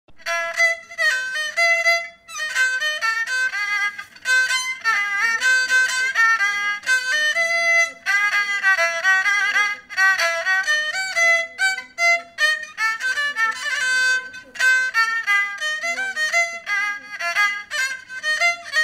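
A bowed fiddle plays a solo melody in phrases, with sliding notes between pitches.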